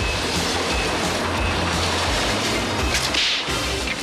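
Background music from the cartoon's score, with a short sharp hissing sound effect about three seconds in.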